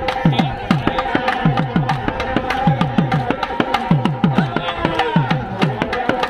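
Devotional music: a hand-played double-headed barrel drum beats a fast rhythm of about three to four strokes a second, its deep strokes bending down in pitch, over a steady sustained melody.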